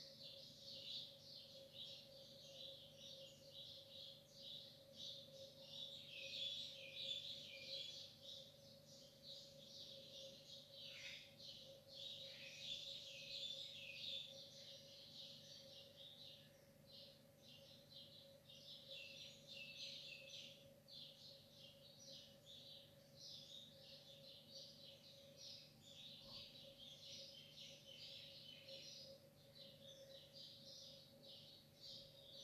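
Faint chorus of many small birds chirping, dense overlapping high calls with a few downward-sliding notes, over a steady low hum.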